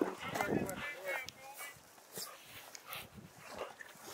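A chocolate Labrador retriever whining in a few short, high, wavering whines, mostly in the first half.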